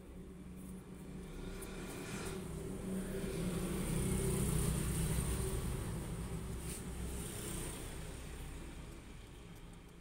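A motor vehicle passing by: a low engine rumble that grows louder to a peak about halfway through, then fades away.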